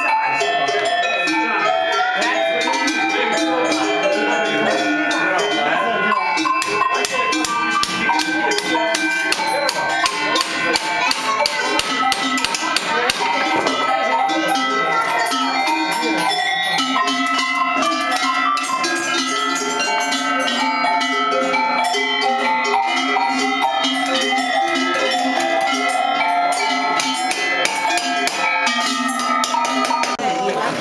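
Many tuned metal bells struck together, a busy, overlapping stream of ringing notes at several pitches without pause.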